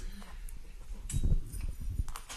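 Irregular low thuds and a few sharp clicks close to a microphone, loudest a little past the middle: knocking and handling noise, not speech.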